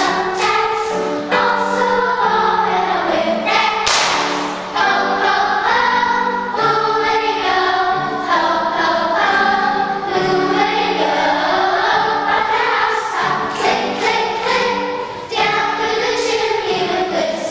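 Children's choir singing in sustained, held notes, with a short noisy burst about four seconds in.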